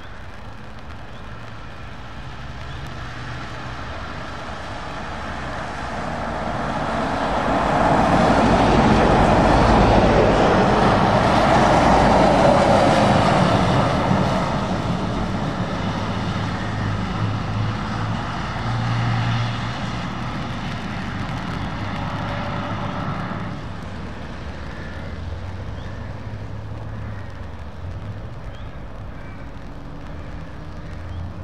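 Two Scania tractor units and cars driving past on a wet road: diesel engines and the hiss of tyres on wet tarmac build to a peak about ten seconds in, then fade as they pull away, with more traffic approaching behind.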